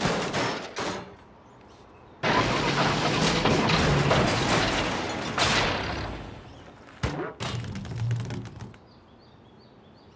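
A cartoon sound effect of a rusted-out school bus falling apart. A few knocks come first. About two seconds in there is a long clattering crash of metal parts giving way and dropping, which trails off, and then a few more sharp clanks and thuds.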